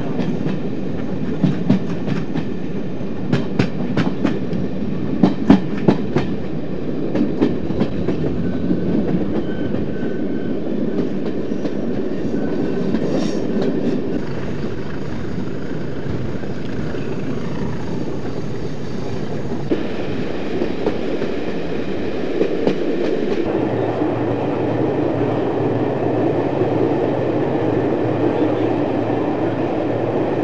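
A passenger train hauled by Class 20 diesel locomotives running along the line. In the first eight seconds or so, sharp clicks come often in pairs as the wheels cross rail joints, over a steady running rumble. The sound shifts abruptly about three-quarters of the way through.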